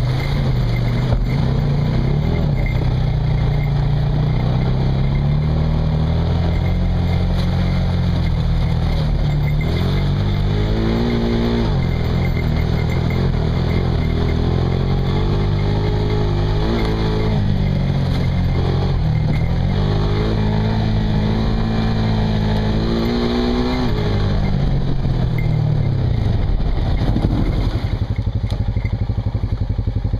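Off-road vehicle engine pulling along a dirt trail, its pitch climbing and dropping again and again as the throttle and gears change, then settling to a steady idle near the end.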